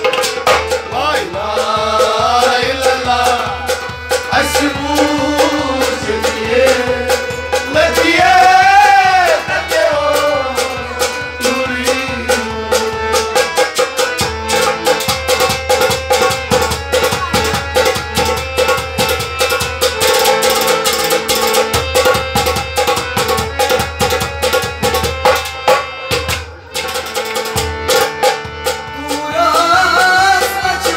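Harmonium and hand drum accompanying a man singing a folk song. The first part is sung with gliding, ornamented phrases. The middle stretch is instrumental with a fast, even drum rhythm under the harmonium's held notes, and the singing returns near the end.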